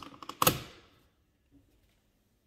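A plastic smart-thermostat body snapping onto its wall mount: one sharp clack about half a second in, with a short ring-off, then a faint click. The snap is the clips locking the unit in place.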